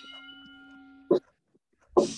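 A steady ringing tone, a low note with higher overtones, holds for about a second and then stops. A short loud burst follows just after it, and a louder, hissy burst comes at the very end.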